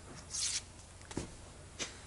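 White plastic pocket slide rule being handled: the slide scrapes briefly through the body about half a second in, then a knock a little after one second and a lighter click near the end as it is fitted back.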